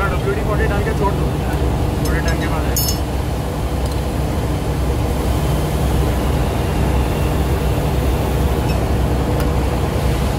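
Loud, steady drone of running engine-room machinery, the diesel generators and auxiliaries of a ship, with a constant low hum. A single sharp click sounds about three seconds in, and faint voices come through the din around two seconds in.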